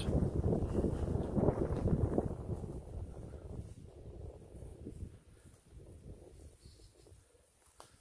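Wind buffeting the microphone, a low, noisy rumble that is strongest for the first two or three seconds and then dies away.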